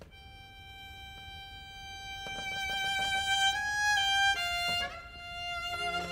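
Solo violin opening a slow tango with long held notes that swell in volume and step to new pitches a few times. Lower accompanying instruments join just before the end.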